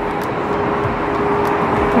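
Steady traffic noise, a constant wash of passing cars, with a faint steady hum underneath.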